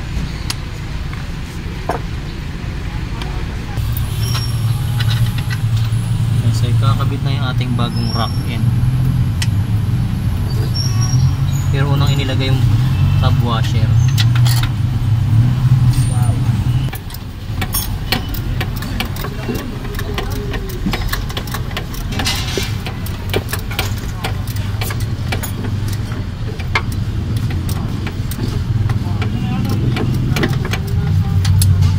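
Auto-repair shop ambience: a vehicle engine running steadily nearby, with metal tools clinking and people talking in the background. The low engine hum drops off suddenly about halfway through, leaving a quieter hum.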